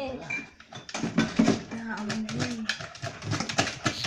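Dachshund sniffing and nosing at the foot of a dish cabinet while hunting for a rat, with a quick irregular run of small clicks and taps through most of it, and a short low murmur in the middle.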